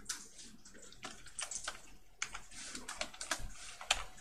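Computer keyboard typing: an uneven run of key clicks, with a short pause about two seconds in and a sharper keystroke near the end.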